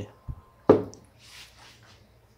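A sharp knock, the loudest sound, as the jet-studded torch burner bowl is set down on the workbench, preceded by a small thump and followed by a brief, faint rustle.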